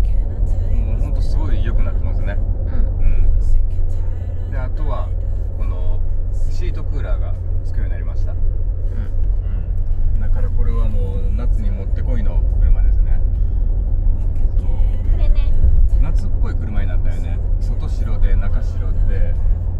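Steady low drone of road and engine noise inside the cabin of a Mercedes-Benz G400d cruising on an expressway.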